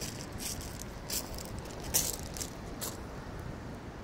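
Wind rumbling on the microphone, with half a dozen short, irregular crackles.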